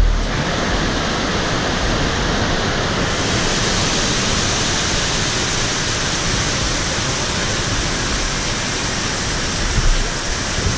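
Waterfall rushing down sloping rock slabs, a loud steady roar of water heard close to the camera, getting brighter and hissier about three seconds in.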